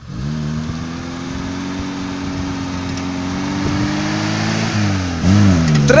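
VAZ 2101 with a swapped-in Niva 1.7-litre inline-four revving hard under load as the car spins its welded-diff rear wheels on grass. The engine note climbs steadily for about four seconds, dips briefly near the end, then comes back louder as the car gets close.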